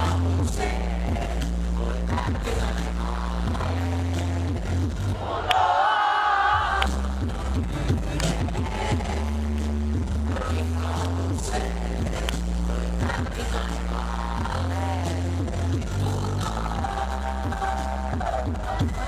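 Live hip-hop track with a heavy, pulsing bass beat and rapped vocals, sounding echoey and somewhat distorted as picked up by a small camera microphone in a reverberant ice-hall arena. The bass cuts out briefly about six seconds in, leaving a higher melodic part, then comes back.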